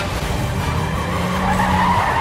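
Car tyres screeching, growing louder toward the end, over background music.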